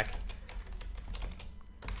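Typing on a computer keyboard: a run of quick, uneven key clicks as a short note is typed.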